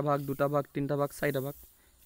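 Speech only: a voice talking for about a second and a half, then a short pause.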